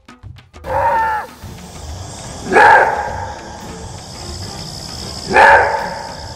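Maned wolf giving its throaty roar-bark: a shorter falling call about a second in, then two loud barks about three seconds apart. Background music plays underneath.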